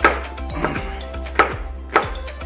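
Large kitchen knife chopping through a small bird on a plastic cutting board: four sharp chops, the loudest at the start, about one and a half seconds in, and at the end.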